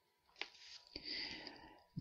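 A pause in a man's narration: a faint mouth click, then a soft intake of breath about a second in, before he speaks again.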